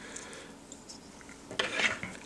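Faint room tone, then about a second and a half in a short burst of scratchy rubbing and small clicks as fingers take hold of a fly clamped in a metal fly-tying vise.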